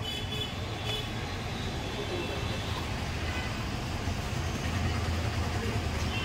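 Steady low hum and rumble of shop and street background noise, with faint voices now and then.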